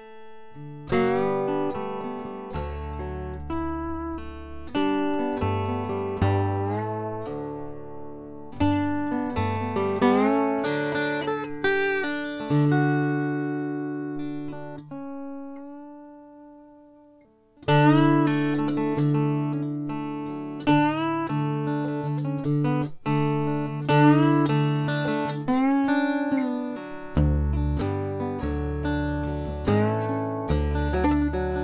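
Weissenborn acoustic lap slide guitar played with a slide: plucked notes and chords, some gliding in pitch. Midway a chord rings out and fades for several seconds before the playing comes back strongly.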